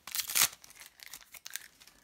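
Foil trading-card booster pack crinkling and tearing as it is pulled open by hand. A loud burst in the first half second is followed by quieter rustling that dies away near the end.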